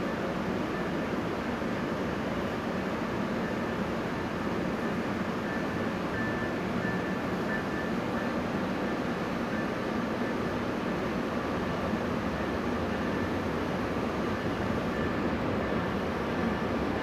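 Steady ambient rumble and hum of a covered underground railway platform, unchanging throughout, with a faint steady high whine over it.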